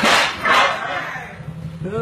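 A sharp smack right at the start and a burst of noise just after, then a person's exclamations of "oh, oh" near the end, which cut off abruptly.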